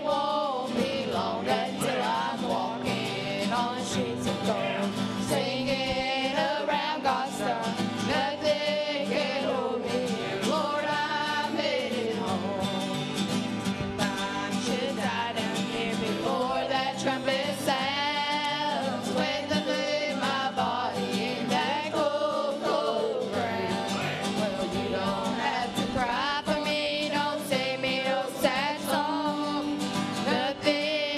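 A gospel song sung by a group of women's voices in harmony, with acoustic guitar accompaniment running under the singing.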